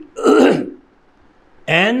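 A man clearing his throat once, a rough sound lasting about half a second, followed by a pause and then the start of speech near the end.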